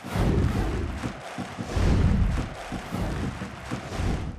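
Outro sting of deep bass swells and rushing, whooshing noise under an animated logo end card, starting suddenly and loudest about two seconds in.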